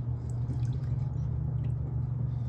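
Rust-remover solution dripping off a metal tool just lifted out of a plastic tub: a few faint, scattered drips falling back into the liquid. A steady low hum runs underneath.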